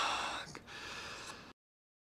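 A man gasping for breath: a loud, breathy gasp, then a shorter, softer one. The sound cuts off abruptly about one and a half seconds in.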